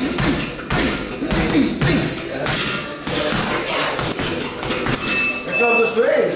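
Boxing-gloved punches landing on a heavy punching bag, a string of sharp thuds about once or twice a second.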